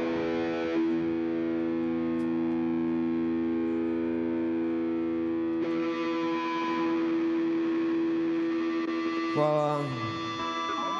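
Live rock band music: a distorted electric guitar chord sustained and ringing steadily, brightening about halfway through, with a short downward pitch slide near the end.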